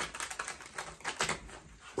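A deck of tarot cards being shuffled by hand: a quick, uneven run of light clicks as the cards slap and slide against each other.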